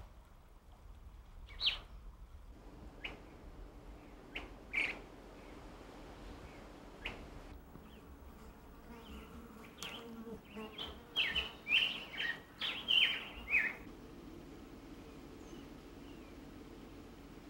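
Wild bird calling: a few isolated short high chirps in the first seconds, then a quick run of short, sharp calls that bend in pitch, from about ten seconds in until near the end, over a faint steady background.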